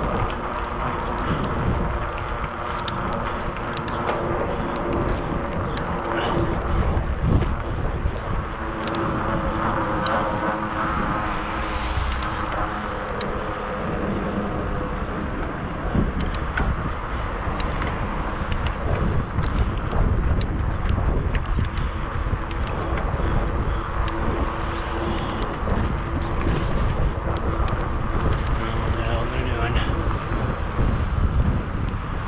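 Wind rushing over a bicycle-mounted action camera's microphone while riding along a city street, with a steady deep rumble, scattered clicks and rattles from the road, and passing car traffic.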